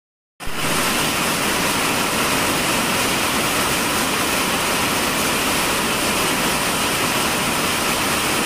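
Heavy rain falling, a steady hiss that starts about half a second in after a brief silence.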